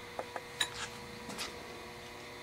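A few light clicks and clinks as broken plaster mold pieces and a freshly cast aluminum plug are handled and moved about.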